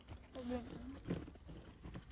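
A brief faint murmured voice, then a few light clicks of hands handling the plastic door trim.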